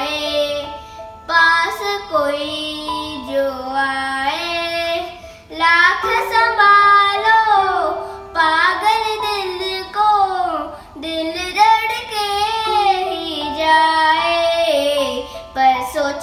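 A young boy singing a slow, melodic Hindi film song into a handheld karaoke microphone, holding long notes with glides between them.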